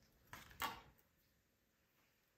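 Near silence, with two faint, brief rustles in the first second.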